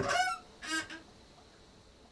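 Two short calls from an animal, the second about half a second after the first, both over by about a second in.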